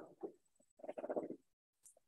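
Faint, brief human vocal sounds: a short utterance at the start and a longer murmured sound about a second in.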